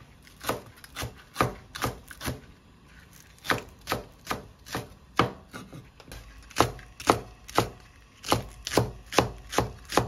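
Chef's knife chopping green onions and garlic on a wooden cutting board: a run of sharp chops about two a second, broken by two brief pauses.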